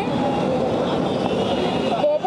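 Steady crowd hubbub: many overlapping voices murmuring, with a constant street rumble beneath.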